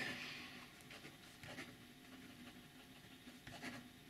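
Faint scratching of a ballpoint tip writing on paper: the ballpoint refill of a sterling silver Waldmann Two-in-One pen moving across a notebook page.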